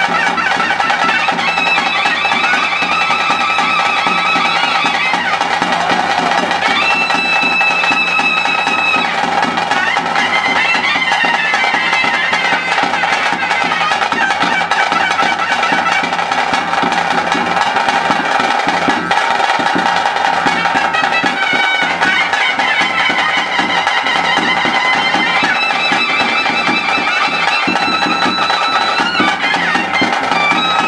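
Traditional bhuta kola ritual music: a nadaswaram-type double-reed pipe plays a melody of long held notes over a steady drone, with drums beating beneath, more plainly in the second half.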